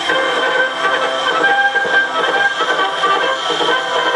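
Band music played from a 1901 acoustic disc record on a 1914 wind-up Victrola, heard through the machine's built-in horn. The sound is thin, with little bass or treble, over a steady hiss of surface noise from the steel needle in the grooves.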